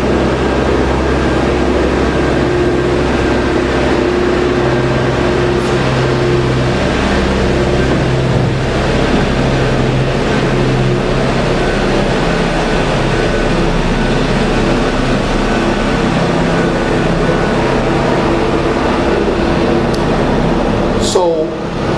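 A steady machine hum and rumble with several held low tones, its deepest part fading about halfway through.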